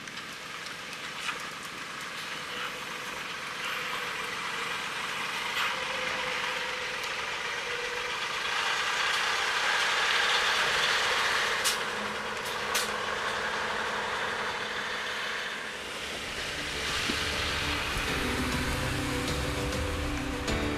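Mitsubishi Fuso Aero Ace coach driving past and pulling away. Its engine and tyre noise build to a peak about halfway through and then fade, with two sharp clicks a little after the peak. The low end of the sound is cut back.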